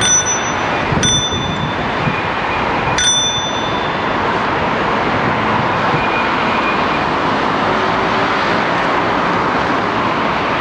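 A bicycle bell dinged three times: at the start, about a second in, and about three seconds in, each ding ringing briefly. Under it is a steady rush of wind and traffic noise.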